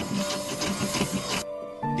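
A hand woodworking tool rasping across a wooden board in quick, uneven strokes, stopping about a second and a half in, over steady background music.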